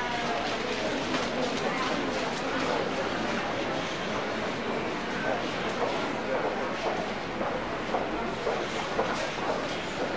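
Crowd of shoppers: many voices talking over one another in a steady, indistinct babble.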